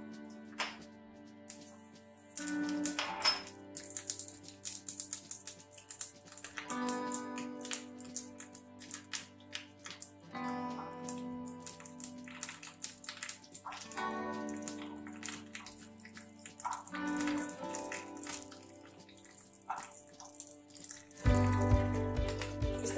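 Background music over the fine crackle of cumin seeds sizzling in hot oil in a small steel tadka ladle. Near the end a louder, deeper sound comes in.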